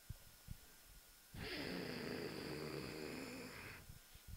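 A man's long, breathy exhale close to a handheld microphone. It starts about a second and a half in and lasts a little over two seconds.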